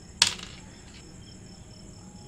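A single sharp tap about a quarter second in: a small LM7805 voltage regulator in a TO-220 package set down on a wooden tabletop. A steady high-pitched whine runs underneath.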